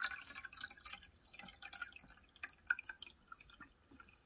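Water dripping and splashing irregularly into a clear plastic water tank as it is filled from a jug, faint small splashes rather than a steady stream.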